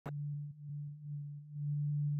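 A low, steady electronic drone tone opening the background music score, swelling and dipping softly about twice a second, after a brief click at the very start.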